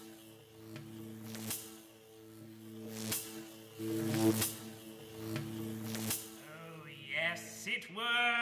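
A staged contraption just switched on: a steady low pitched hum, with sharp cracks coming irregularly about every one to two seconds. Near the end a voice rises and falls in short glides.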